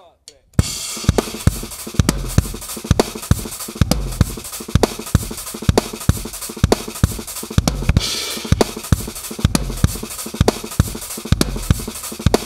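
Drum kit played at a fast tempo: an unbroken run of kick and snare strokes over a hi-hat kept by the left foot, in a fast 6/8 groove, starting about half a second in. A cymbal wash rises briefly near the start and again about eight seconds in.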